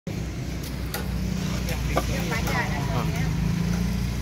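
An engine running steadily with a low, even drone, with people talking in the background and two short knocks about one and two seconds in.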